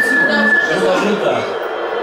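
People's voices talking, with a single steady high-pitched whistle held through about the first second.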